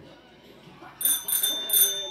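Bicycle bell on a child's bike rung rapidly about four times, starting about a second in, its high ring hanging on after the last strike.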